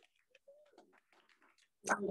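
Near silence: faint room sound with a few soft scattered ticks and one brief faint tone about half a second in.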